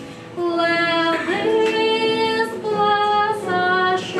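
A woman singing a solo song, holding long sustained notes that step from pitch to pitch, after a brief breath at the start.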